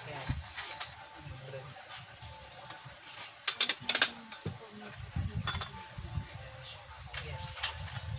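Glazed ceramic plates and bowls clinking and knocking against each other as they are handled and stacked, with a quick run of sharp clinks about three to four seconds in.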